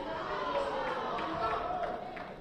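Indistinct shouting and chatter from several voices in a large hall around a boxing ring, with a few faint knocks among them.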